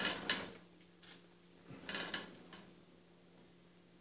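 Short metal clunks and scraping as a Snapper rear-engine riding mower is turned around on the workbench: a clatter at the start and another brief one about two seconds in.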